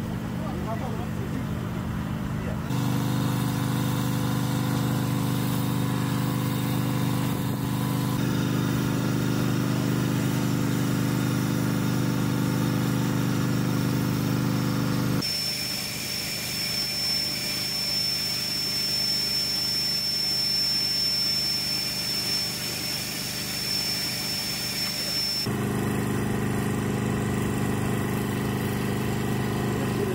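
A steady, low mechanical hum, like a motor running, that starts and stops abruptly at shot changes; in the middle stretch it gives way to a thin, steady high whine over hiss.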